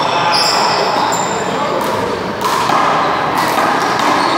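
Small rubber handball being struck by gloved hands and slapping off the front wall in a rally, a few sharp slaps with sneakers squeaking on the court floor, in a reverberant hall.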